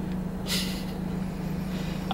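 Steady low hum and rumble inside a car cabin, with a short breathy hiss about half a second in.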